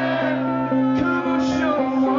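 Live pop song performed by a band: a man singing into a microphone over acoustic guitar, with a single sharp click about a second in.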